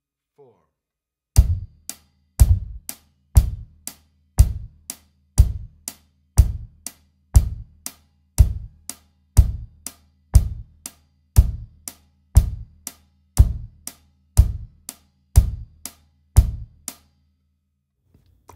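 Drum kit's Dixon bass drum and Meinl hi-hat playing a slow, even beginner pattern: hi-hat eighth notes, about two strokes a second, with the bass drum struck together with the hi-hat on every beat, about once a second. It starts about a second and a half in and stops about a second before the end.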